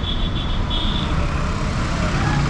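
Road traffic going by on a city road, a steady rumble of passing engines and tyres. A brief high tone sounds three times in the first second.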